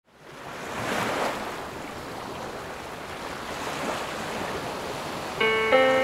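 A steady rushing noise, surf-like, fades in and swells about a second in, then holds. About five and a half seconds in, plucked guitar notes come in as the song's intro begins.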